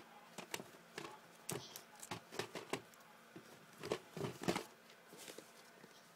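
Quiet, irregular clicks, taps and light knocks of plastic VHS cassettes and cases being handled, with a few louder knocks about a second and a half in and around four seconds.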